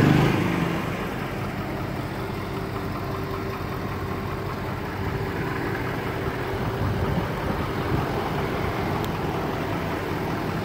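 An engine idling steadily, with a low hum and a faint held tone. A louder burst of engine sound at the very start dies away within the first second.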